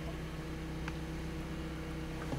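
2012 Mazda3's engine idling, a steady low hum heard inside the cabin, with a faint click about a second in.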